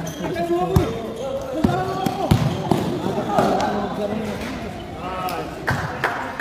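A basketball bouncing on a concrete court floor, several sharp thuds at uneven intervals, with players' voices calling out over them.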